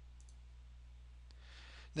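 Faint computer mouse clicks over a low steady hum: two quick clicks close together near the start and one more past the middle, followed by a short breath just before speech.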